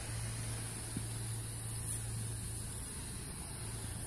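Steady hiss of a hand-pump sprayer misting foaming coil cleaner onto a heat pump's outdoor coil, over a constant low hum.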